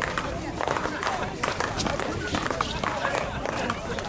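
A paddleball rally: several sharp pops as the ball is struck by solid paddles and rebounds off the wall, with players' quick footsteps on the court, under voices talking.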